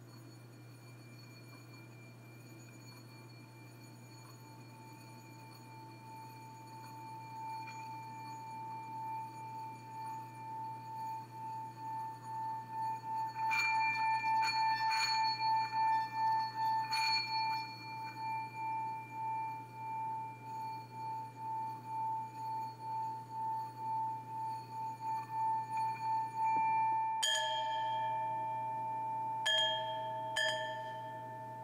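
Hand-held singing bowl rubbed around its rim with a wooden stick, building a sustained singing tone that swells slowly and pulses in loudness, with a few clinks of the stick on the rim in the middle. Near the end a bowl is struck, adding a lower ringing tone, and is struck twice more just after.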